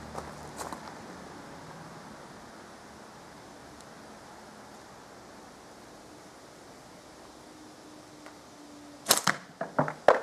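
A slingshot with flat rubber bands is shot about nine seconds in: one loud, sharp crack as the bands are released, then a few smaller quick knocks. Before the shot there are only faint handling clicks over a low background.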